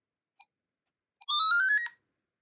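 Gakken GMC-4 4-bit microcomputer beeping from its built-in speaker: one faint short key-press beep, then about a second in a quick, loud run of electronic beeps climbing step by step in pitch for just over half a second before stopping.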